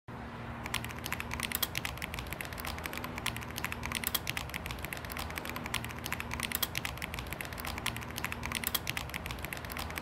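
Computer keyboard typing: a fast, irregular run of key clicks over a steady low hum, starting just under a second in.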